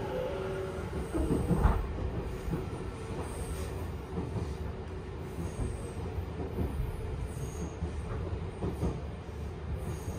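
Tobu 10000-series electric commuter train running at speed, heard from inside a passenger car: a steady low rumble of the running gear with a few short thumps, the loudest about a second and a half in.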